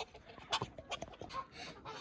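Faint, scattered short calls of farmyard poultry.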